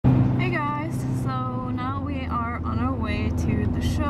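Steady low drone of a car's engine and road noise inside the moving cabin, under a young woman talking.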